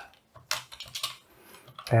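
Typing on a computer keyboard: a quick run of keystrokes starting about half a second in, then a brief pause.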